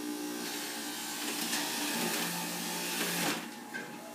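Electric centrifugal juicer's motor running with a steady hum while produce is pushed down the feed chute and shredded; the grinding gets louder about half a second in and falls away shortly before the end as the pusher is lifted.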